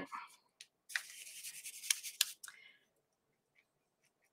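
Paintbrush bristles scrubbing paint onto a small ornament: a faint scratchy rustle lasting about a second and a half, with a few sharp clicks.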